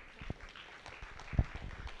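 A pause in a lecture hall: faint room noise with two soft knocks, the louder one past the middle.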